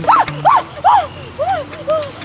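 A small dog yelping about five times, each yelp rising then falling in pitch and each a little lower than the one before.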